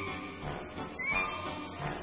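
Orchestra playing the accompaniment to a revue song, with a short high upward slide in pitch about a second in.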